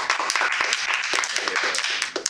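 A small audience clapping, a dense patter of many individual hand claps.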